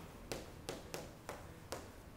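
Chalk on a chalkboard, tapping as a word is written: about five short, faint taps.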